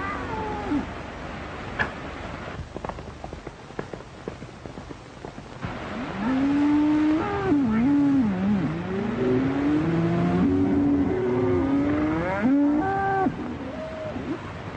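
Cattle bawling in a herd being driven: from about six seconds in, long wavering bawls overlap one another until shortly before the end. Scattered sharp knocks come before them, in the first half.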